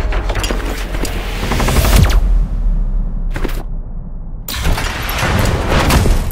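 Cinematic battle sound effects: dense rumbling noise with a deep boom about two seconds in, a short crack in the middle, then a rush of noise rising toward the end, over soundtrack music.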